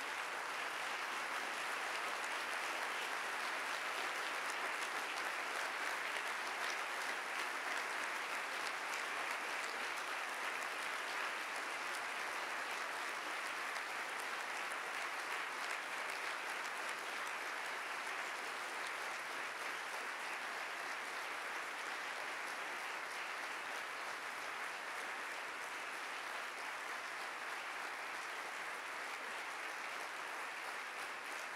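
Audience applause, sustained and steady, building over the first couple of seconds and easing slightly toward the end.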